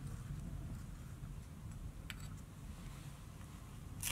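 Quiet room tone with a steady low hum and one faint click about halfway through.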